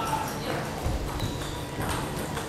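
Wrestling shoes stepping and shuffling on a wrestling mat, with a few soft knocks and thuds as the wrestlers move their feet, over the murmur of a gym hall.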